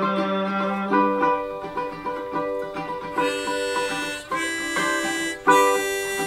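Clearwater bowl-back baritone ukulele, tuned GCEA, playing an instrumental break of plucked notes and chords, with a long held note at the start that stops about a second in.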